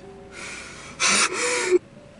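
A man's breathy, gasp-like sound: a softer breath, then a louder wheezy one about a second in that cuts off sharply.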